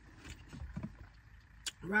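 Faint mouth sounds of chewing a gummy candy, with a few small clicks and one sharper click shortly before the end.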